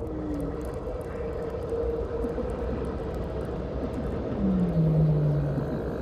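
A low, steady drone with a faint held tone above it. A deeper tone slides down and holds for about a second, starting a little past two thirds of the way through.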